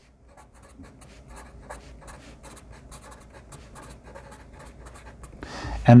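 Sharpie permanent marker writing on paper: a quick run of many short scratchy strokes as a line of words is written out.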